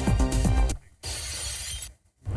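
News-bulletin music bed, then about a second in a breaking-glass sound effect with the sound of shattering glass, which cuts off suddenly.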